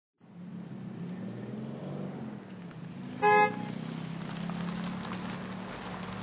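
Road traffic noise with a steady engine hum, broken by a single short car-horn toot about three seconds in, the loudest sound.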